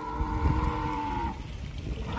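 Recorded dinosaur call played by a life-size animatronic triceratops model: one long, steady call held at one pitch over a low rumble, ending about a second and a half in.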